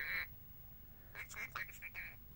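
Lorikeet giving a short burst of faint, harsh chattering calls about a second in.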